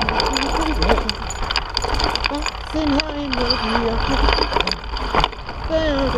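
A man humming a tune while riding a mountain bike over a rocky trail, with wind rumbling on the microphone and the bike rattling and clicking over rocks.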